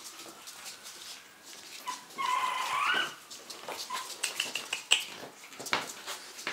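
Three-week-old French bulldog puppies whimpering as they play. About two seconds in there is one loud whine lasting nearly a second that rises in pitch at the end, followed a second or so later by a few short high squeaks. Light clicks of paws on the tile floor run through it.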